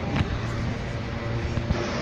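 Steady city street noise with traffic, with faint music underneath.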